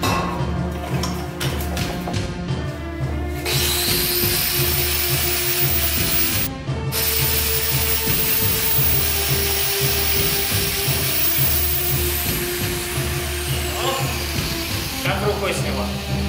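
Angle grinder grinding down the weld seam on a steel gas cylinder, starting a few seconds in, briefly stopping near the middle, then winding down with a falling whine near the end. Background music with a steady beat plays throughout.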